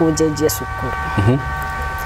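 Short snatches of a voice over a steady background of several held high tones and a constant low rumble.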